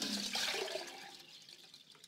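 Cloudy rice water pouring from a plastic bowl into a glass measuring jug, splashing and trickling. The pour tapers off over the second half.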